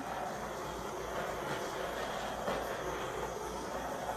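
Heat gun blowing a steady rush of hot air over wet poured acrylic paint to pop air bubbles in it.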